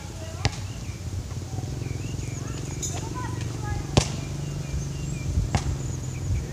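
A basketball bouncing on an outdoor hard court: a few separate bounces, one about half a second in, a louder one about four seconds in and another shortly before the end.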